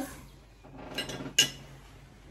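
Tableware clinking at a meal: a light clink just before one second in and a sharper one about one and a half seconds in.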